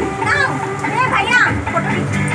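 Children's high voices and overlapping chatter in a crowded room, with no clear words.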